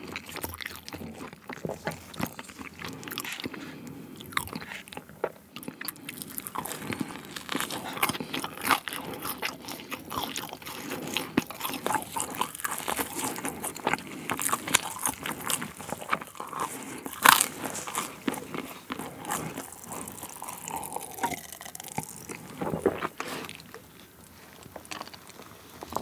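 Close-miked mouth sounds of a man eating sweet potato pizza: repeated crunchy bites and chewing of the crust and topping. One louder crunch comes about two-thirds of the way through.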